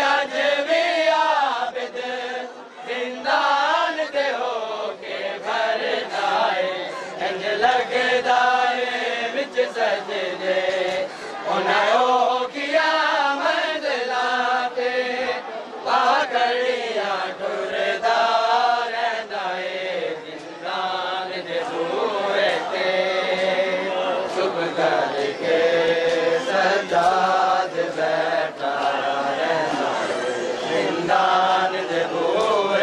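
A man chanting a noha, a Shia mourning lament, in long wavering, drawn-out phrases, with frequent short sharp slaps underneath.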